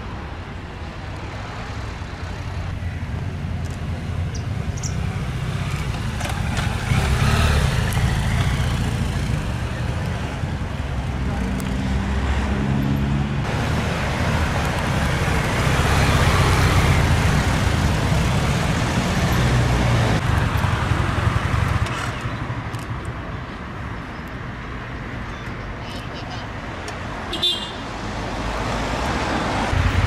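Road traffic noise: cars passing, and a police motorcycle's engine running as it rides by, the sound swelling and fading with each pass.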